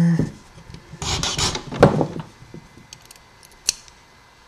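Pippin file rasping across a brass key blank in a couple of short strokes about a second in, cutting the fourth pin's depth a little deeper. A single sharp click near the end.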